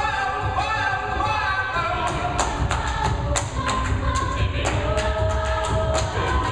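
A co-ed a cappella group singing a pop song arrangement live, in layered vocal harmonies over a deep sung bass line. From about two seconds in, sharp beatboxed percussion hits join the voices.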